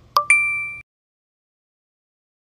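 A quick tap, then a bright bell-like ding that rings on one steady pitch for about half a second before cutting off suddenly.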